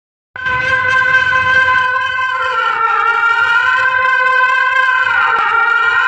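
Outdoor horn loudspeakers blaring one sustained, steady note. It starts abruptly just after the beginning and wavers slightly in pitch near the end.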